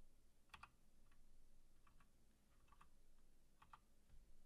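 Faint computer keyboard typing: about five separate keystrokes, each a quick double click, spaced roughly a second apart as a short command is typed.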